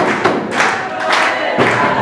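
A room of students clapping and cheering: dense, steady applause with excited voices mixed in.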